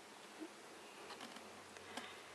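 Near silence: faint steady room hiss, with a few soft clicks and taps of fingers handling a small plastic figure.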